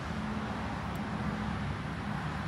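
Steady low hum of road vehicles, an even engine drone with no speech over it.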